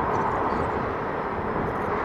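Yamaha FZ6 Fazer motorcycle riding at low speed, heard from the rider's helmet camera as a steady mix of engine and wind noise, mostly low-pitched.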